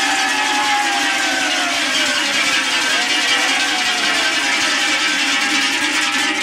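Many large cow bells (tălăngi) shaken together in a loud, continuous jangle for the Romanian New Year urătura, with a long, slowly falling tone sounding over them.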